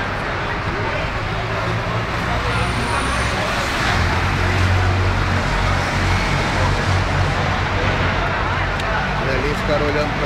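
Street traffic noise: a steady low rumble of passing cars and buses, heavier from about four seconds in, with people talking nearby.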